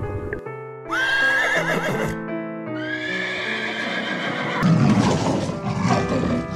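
Two long, high-pitched animal calls over background music. The first wavers, and the second falls in pitch at its end.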